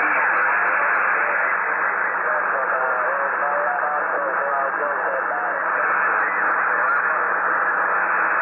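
Radio receiver's speaker giving out steady static hiss with a faint, distant station's voice talking under the noise: a long-distance station replying over the air.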